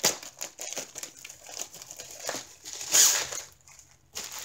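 Plastic packaging crinkling and rustling as a rolled diamond painting kit is handled and unwrapped, with a louder crackle about three seconds in.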